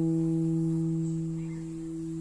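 Acoustic guitar chord ringing on after being struck, slowly fading.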